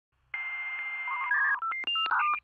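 Telephone sound effect: a steady high tone over hiss for about a second, then a quick run of touch-tone keypad beeps at changing pitches.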